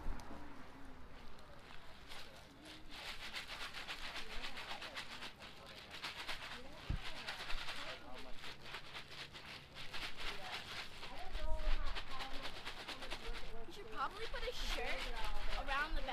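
Ice and rock salt crunching and shifting inside a plastic zip bag wrapped in a towel as the bag is shaken and squeezed to freeze homemade ice cream. It is a busy crackly rustle, strongest in the first half. Faint indistinct voices come in near the end.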